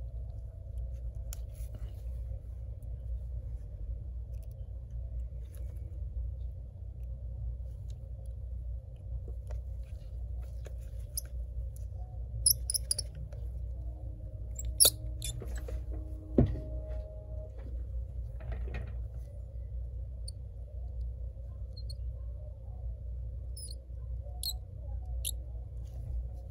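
Precision screwdriver driving small screws into a laptop's internal metal bracket: faint squeaks and ticks over a steady low hum, with three sharp clicks in the middle stretch.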